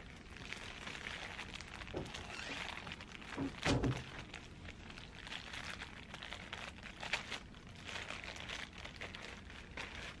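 Plastic packaging crinkling and rustling as a packet is torn open and handled, with a louder knock a little under four seconds in.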